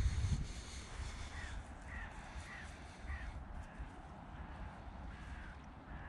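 A bird calling: four short calls about half a second apart starting a little over a second in, then two fainter ones near the end. A low rumble at the very start is the loudest sound.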